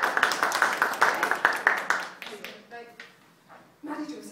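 A group of people clapping, dense and quick, which dies away about two seconds in, with a few voices after.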